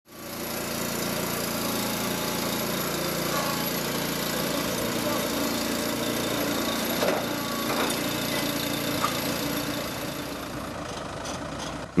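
A small engine running steadily, with a thin high whine over it and a few faint knocks about seven to nine seconds in.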